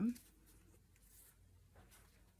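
The end of a spoken word, then faint rustling and handling noise as skeins of yarn are picked up, with two soft scuffs in the second half.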